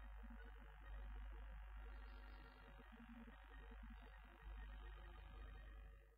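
Near silence: a low, steady electrical hum with faint hiss, and no speech.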